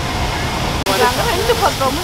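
Water rushing steadily down an artificial rock waterfall, with a brief dropout a little under a second in.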